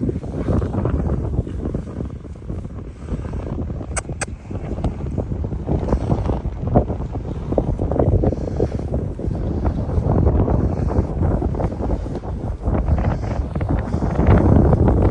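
Wind buffeting the microphone: a rumbling, gusty noise that grows stronger in the second half.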